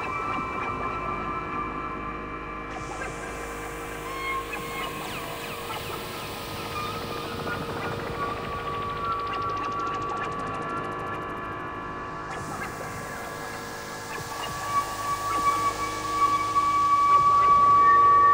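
Ambient electronic music played live on synthesizers: long sustained drone tones, a high rising sweep in the middle, and a swell to louder near the end.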